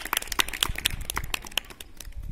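A few people clapping by hand, quick irregular claps several times a second that thin out near the end.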